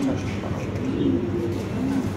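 Pigeons cooing: soft, low, rising-and-falling coos about a second in and again near the end, over a steady background hum.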